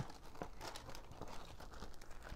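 Tissue wrapping paper crinkling and rustling as it is lifted and handled in a cardboard boot box, in irregular small crackles.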